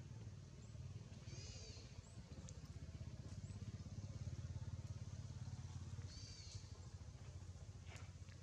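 Faint outdoor background: a steady low rumble, with two brief high-pitched chirps, about a second and a half in and again near the end.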